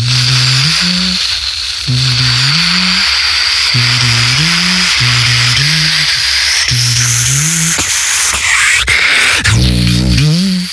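Beatboxer's vocal intro: a continuous hissing, whistle-like synth tone held over a low hummed bass melody that repeats in short rising phrases about once a second, with a brief pitch sweep near the end.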